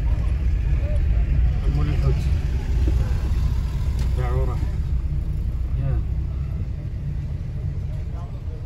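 Car engine and road noise heard from inside the cabin while driving slowly: a steady low rumble. Voices from the street come through a few times, the clearest about four seconds in.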